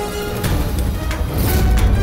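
Dramatic background score: held tones, then heavy low drum hits come in about half a second in and build.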